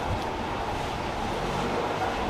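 Steady city street noise: a low traffic rumble and hiss with no distinct events.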